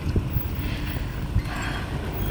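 Wind rumbling on the microphone, a steady low buffeting, with a couple of soft thumps.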